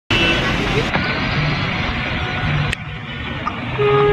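Busy city road traffic: cars running and a steady wash of road noise, with a car horn held for about a second near the end.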